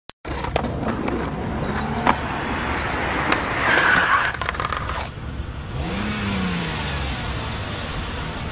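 Skateboard wheels rolling on a paved path with several sharp knocks and a brief scraping rush a little before the middle as the board gets away from its rider. After about five seconds this gives way to a car engine whose pitch rises and then falls.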